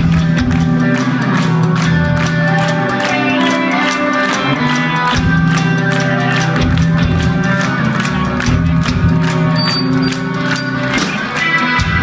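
Live rock band playing loud: distorted electric guitars and bass holding chords over a steady drum-kit beat.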